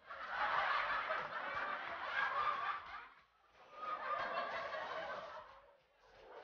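People laughing in two bouts, with a short break about halfway through.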